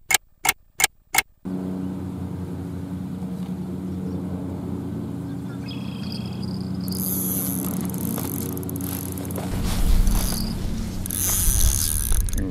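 Clock tick-tock sound effect, about five sharp ticks in quick succession at the start. A steady low hum made of several even tones follows, with a brief high hiss later on.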